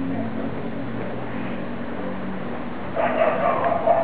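Golden retriever puppies yapping in a louder burst from about three seconds in, over a steady low hum.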